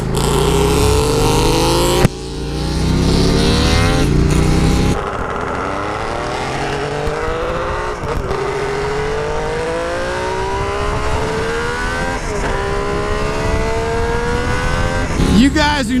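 Kawasaki H2 three-cylinder two-stroke engine pulling hard through the gears. Its pitch climbs steadily and drops back at two upshifts, over road and wind noise. A few seconds of motorcycle riding noise come first, from shorter cuts.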